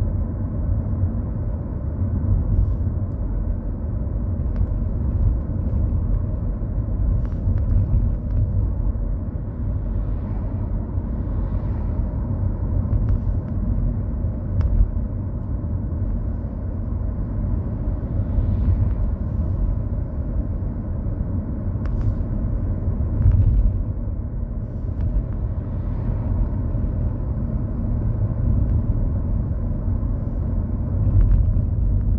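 Steady low rumble of a car driving at road speed, heard from inside the cabin: engine and tyre noise on the road, with a few faint clicks scattered through.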